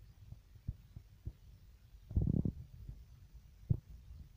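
Low rumble with scattered soft thumps from a faulty microphone, with a louder muffled burst about two seconds in: the noise of a mic error rather than clean recorded sound.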